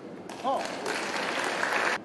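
Audience applauding, with a short call from one voice just after the clapping begins; the applause grows and then cuts off abruptly.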